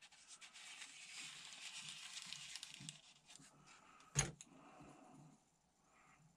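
Faint rustling and rubbing of paper covering as fingers press and smooth it onto the balsa frame of a model-plane float, for about three seconds. A single short click follows about four seconds in.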